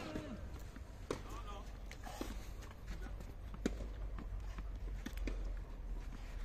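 Tennis balls being hit and bounced on clay courts, a few scattered sharp knocks a second or more apart, with footsteps and faint distant voices over a low steady rumble.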